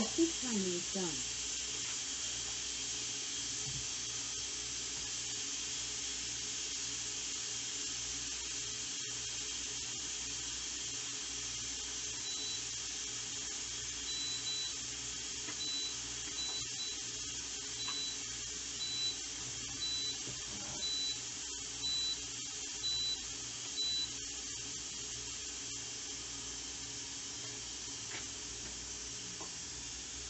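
Electric pressure cooker letting off pressure through its steam vent: a steady hiss that eases slightly toward the end. From about twelve to twenty-four seconds in, the cooker's control panel gives about a dozen short, high beeps roughly a second apart.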